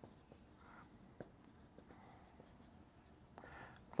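Marker writing on a whiteboard, faint, with light scratches and short ticks of the tip; one tick about a second in stands out.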